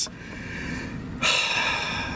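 A man's long, breathy exhale about a second in, a sigh of pleasure at a fast, vigorous seat massage, over a quieter low hum.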